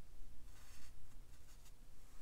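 Soft, scratchy strokes of a round watercolour brush on cold-press cotton paper: a few short brushings about half a second in and again around a second in, over a low steady hum.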